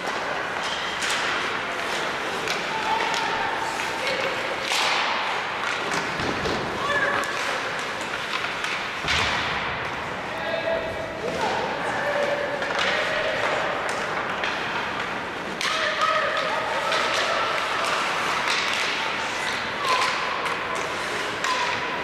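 Ice hockey play in an arena: repeated sharp knocks and thuds of puck and sticks hitting the boards and each other, with distant players' shouts.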